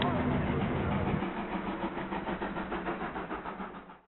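A vehicle engine running with a rapid, even pulse and a low steady hum, fading out near the end.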